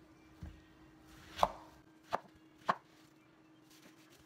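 A kitchen knife slicing a ripe cantaloupe into wedges on a wooden cutting board: a soft thump, then three sharp knocks of the blade meeting the board, the first of them the loudest.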